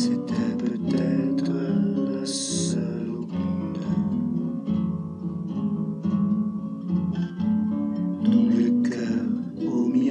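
Instrumental music between sung lines, led by plucked acoustic guitar picking notes in quick succession, with a brief high hiss about two and a half seconds in.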